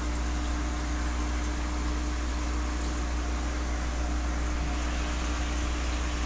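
Aquarium running with its air supply on: a steady low hum and a thin steady tone over an even hiss of air bubbling up through the water.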